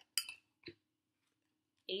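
Two brief clatters of rock-hard stale baguette pieces being handled on a plate: a sharp one just after the start and a smaller one about half a second later.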